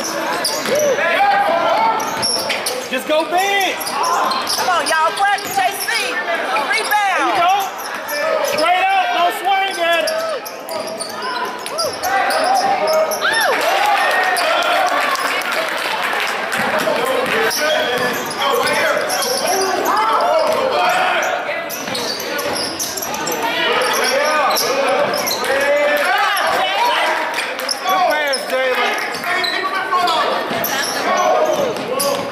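Game sounds of indoor basketball: the ball bouncing on the hardwood floor amid players' and spectators' voices and shouts, echoing in a large gym.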